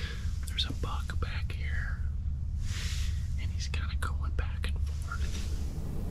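A man whispering, breathy and hushed, over a steady low rumble.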